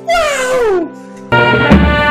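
A man's loud, drawn-out cry that slides down in pitch, over a sustained music backing. Just after halfway it cuts to fuller music with a drum beat.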